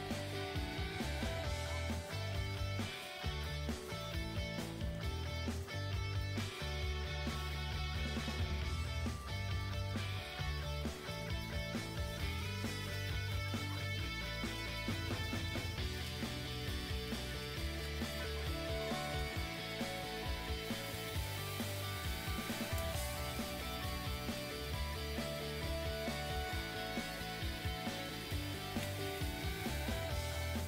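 Background music with a steady bass line moving from note to note.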